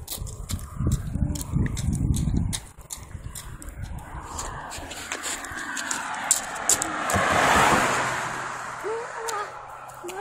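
Low rumbling from the phone's microphone being rubbed and buffeted for the first couple of seconds. Then a car goes by on the street, its tyre noise swelling to loudest about seven to eight seconds in and fading away.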